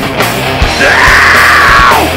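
Live heavy stoner/southern metal band playing: distorted electric guitars, bass and drums with a regular kick drum. About a second in, the singer comes in with one long yelled note held to the end.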